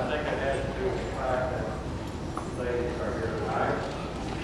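Indistinct voices talking in a large hall.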